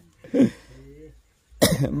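A person coughs once, a short burst about half a second in, followed by a brief soft hum of voice.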